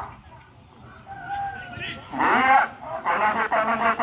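A rooster crowing, a thin held call lasting about a second, in a lull in the loudspeaker commentary. A man's voice over the loudspeaker follows in the second half.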